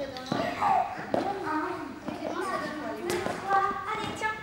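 Children's voices chattering and calling in a large hall, with a couple of soft thuds early on as big foam dice land on the floor mat.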